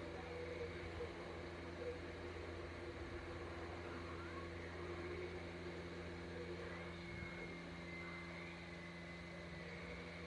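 A steady low hum of room noise, with faint, indistinct sound from a television playing a videotape and a thin high tone near the end.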